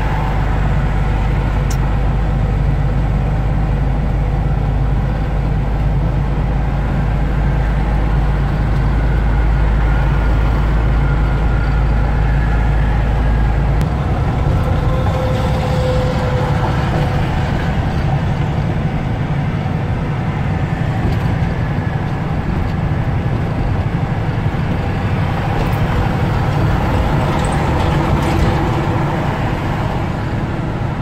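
Inside a semi truck's cab at highway speed: a steady low drone of the diesel engine mixed with tyre and road noise. About halfway through, the deepest part of the rumble shifts and thins out.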